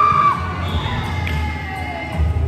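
Volleyball players shouting and cheering, with one short, high shout right at the start, over background music.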